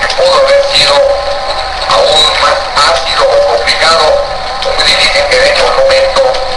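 Radio broadcast audio of music with singing. It sounds thin, with almost no bass.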